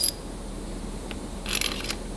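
Small machined metal spacers and a ball joint stud clinking together as they are handled and stacked: a ringing tick at the start, a faint tick about a second in, then a short run of light clinks near the end.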